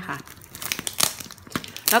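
Clear plastic wrapping on a latex mattress topper crinkling and rustling as it is handled, in irregular crackles.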